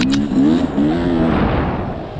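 Dirt bike engine revving as it is ridden, its pitch rising and falling with the throttle through the first second and a half, then easing off.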